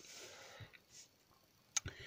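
Quiet pause in speech: a faint breath near the start and a single sharp click shortly before the end.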